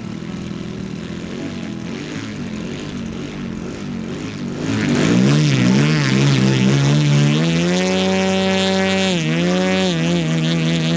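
Large-scale model aerobatic plane's engine running on the ground. It starts at a low steady speed, then from about halfway through the throttle is blipped up and down before it settles at a higher, louder steady speed, with a brief dip near the end.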